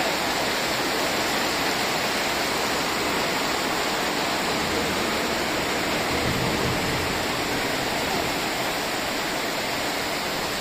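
Heavy rain pouring down in a steady, dense hiss.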